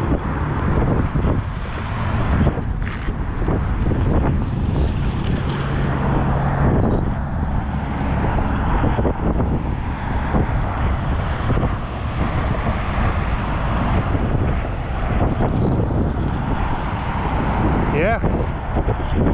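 Steady wind noise buffeting the microphone, a continuous low rumble.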